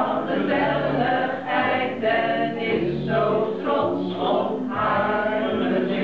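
A small mixed group of men and women singing a Dutch song together from song sheets, in phrases of held notes.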